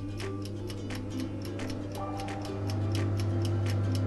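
Oven timer ticking, about five ticks a second, over a steady low electric hum: a toaster oven running on its timer after the dial has been turned. The hum grows louder about two-thirds of the way through.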